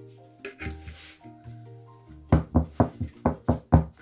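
Background music, then a quick run of about seven hollow knocks, a plastic Tupperware Tortilla Maker mould full of batter tapped down on the table to settle and level the batter.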